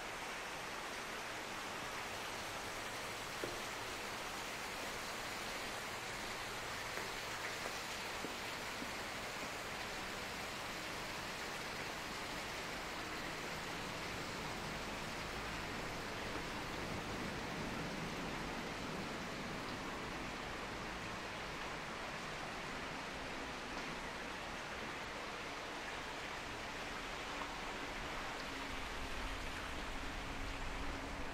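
Steady, even rushing ambient noise echoing in a concrete underpass, with no distinct events. A faint low hum comes in near the end.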